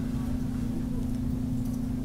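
A steady low hum with a faint rumble beneath it, constant throughout and with no other events: the background noise of the recording.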